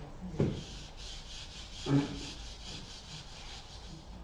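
Whiteboard eraser wiping the board in repeated back-and-forth strokes, a rippling rubbing hiss. Two brief louder sounds stand out, about half a second and two seconds in.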